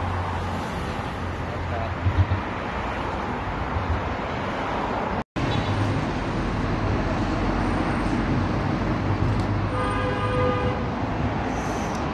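Steady street traffic noise with a low hum, and a car horn sounding once for under a second near the end.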